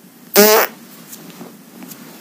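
A single short spoken syllable from the narrating voice, about a third of a second in; otherwise only faint background hiss.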